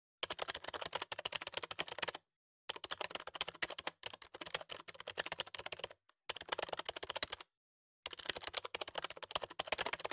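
Computer keyboard typing sound effect: rapid key clicks in about five runs, with short pauses between them, as the on-screen text is typed out.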